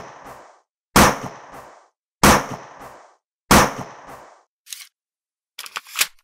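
Gunshot sound effects: loud single shots about 1.3 seconds apart, each echoing briefly, followed by a few fainter clicks near the end.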